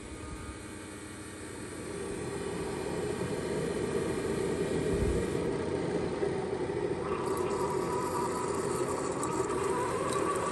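Keurig single-serve coffee maker brewing: a steady pump hum that builds over the first few seconds. About seven seconds in, coffee starts to stream into a ceramic mug.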